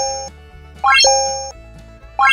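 Synthetic chime sound effect: a quick rising sweep that lands on a held two-note tone and fades, repeated about every second and a quarter. It is the jingle of an animated like-and-subscribe end screen.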